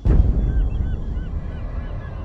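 A sudden deep boom with a low rumble carrying on, over which birds call over and over in short, arching cries.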